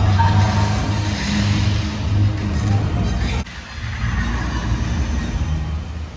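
Loud, bass-heavy fountain-show soundtrack music from outdoor loudspeakers. It drops suddenly in level about three and a half seconds in.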